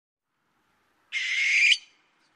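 A single short owl call used as a logo sound effect, starting about a second in and lasting about two-thirds of a second before cutting off sharply.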